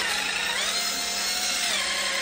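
Cordless electric spin scrubber running, its silicone bottle brush spinning inside a stainless steel water bottle. A steady motor whine whose pitch shifts up a little early on and drops back down near the end.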